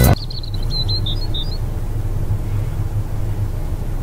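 Steady low rumble of a van driving on an open road, with a few short bird chirps in the first second and a half. A song cuts off just as it begins.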